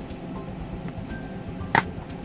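Plastic DVD case snapping open: one sharp click near the end, over a faint steady background.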